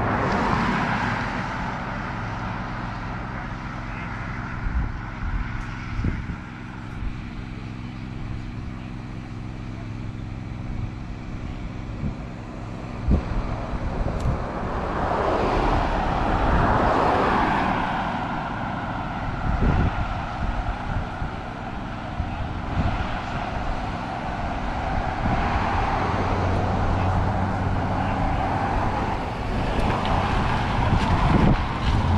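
Road traffic at a street intersection: cars and pickup trucks driving past one after another, each a swelling and fading rush of tyre and engine noise, the loudest about halfway through. A steady low engine hum runs underneath.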